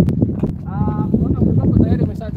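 Footsteps of several people walking on a gravel road, a quick irregular patter of steps. A voice speaks briefly, just under a second in.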